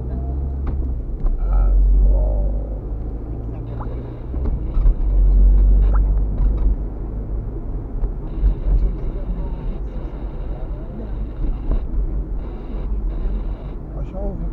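Car driving slowly along a street, heard from inside the cabin: a steady low rumble of engine and road noise.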